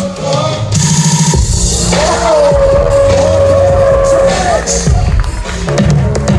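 Loud electronic dance music with a heavy bass line and a long held melodic note through the middle. The music drops out briefly near the end.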